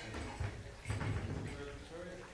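Indistinct, low voices in a room over a low rumble, with a single sharp knock about a second in.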